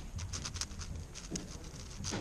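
An X-Man Spark V2 7x7 speedcube being turned fast by hand: a quick, uneven run of plastic clicks and rattles as its layers turn, over a steady low room hum.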